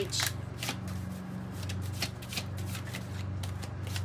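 A deck of oracle cards being shuffled by hand: a quick, irregular run of soft card flicks and riffles, over a steady low hum.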